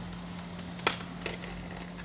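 Hot air rework gun blowing steadily with a low hum, while a blade chips at the heated, cracked back glass of an iPhone 11 Pro Max: one sharp click a little under a second in and a fainter one shortly after.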